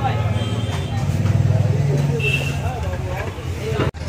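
Busy street at night: a vehicle engine running nearby as a steady low hum, with people talking in the background. The sound drops out for an instant near the end.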